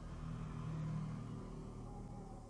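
Faint, steady low hum that swells slightly about a second in and then eases off.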